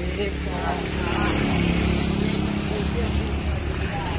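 A motor vehicle passing on the road, its engine hum steady and building to its loudest in the middle before easing, with boys' voices chattering under it.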